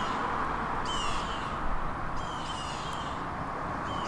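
Smartphone's Magic Finder app sounding its alert, a short high chirping beep repeating about every second and a half, signalling that the Bluetooth tracker tag is out of range. A steady background hiss runs underneath.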